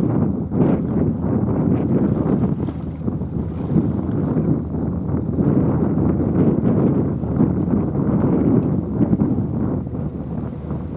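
Wind buffeting the microphone: a loud, steady rumble that flutters constantly, with a faint steady high whine above it.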